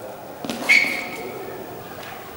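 A sudden foot-fall about half a second in, then a short, high, steady squeak of a trainer's rubber sole twisting on the polished sports-hall floor during a footwork step.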